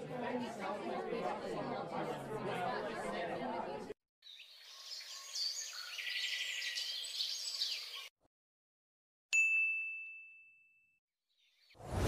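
Voices chattering indistinctly for about four seconds, then a few seconds of high chirping sounds. After a moment of silence comes a single bright, bell-like ding that rings out and fades over about a second and a half.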